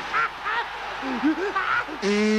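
A cartoon character's voice laughing and whooping in short calls that rise and fall, over the steady noise of a stadium crowd.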